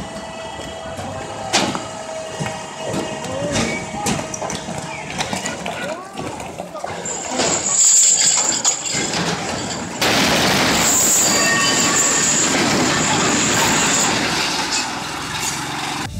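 People shouting and calling out as a crane loses control of a suspended truck, with a steady machine hum underneath. About ten seconds in, a loud, harsh noise starts abruptly and lasts about four seconds.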